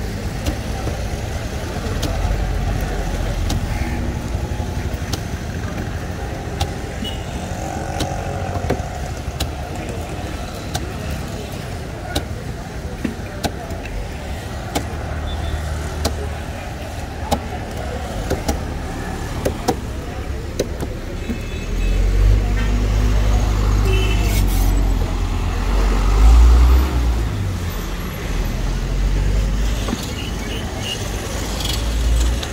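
Large knife chopping crosswise through a seer fish (Spanish mackerel) on a wooden board, irregular sharp knocks of the blade into the wood. Road traffic runs underneath, and a vehicle passes louder over the last several seconds.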